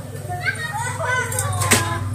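Javan myna (jalak kebo) calling: a quick run of short, gliding whistled and chattering notes, with a sharp click near the end. A steady low hum runs underneath.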